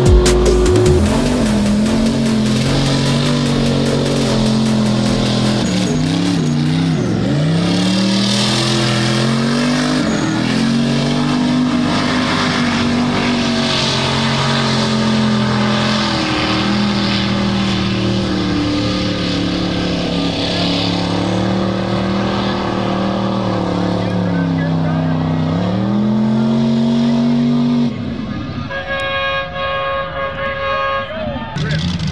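Mud truck engine held at high revs as the truck powers through a mud pit, its pitch dipping and climbing back up several times. The engine sound drops away near the end.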